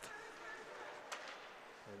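Faint hockey rink ambience during play: a steady low hiss of the arena, with a single light click about a second in.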